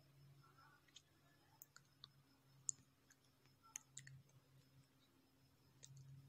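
Near silence: room tone with a faint steady low hum and a handful of faint, irregular clicks, the sharpest a little under halfway through.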